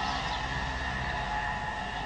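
Steady hiss with a low hum and a few faint steady tones: the background noise of an old analogue recording, heard in a pause between words.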